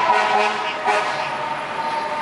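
Fire truck horn and siren sounding in city traffic: a loud blare of several steady pitches that fades, then a single steady tone comes in about a second in.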